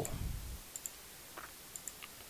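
Light computer mouse clicks, a few in all, some in quick double pairs.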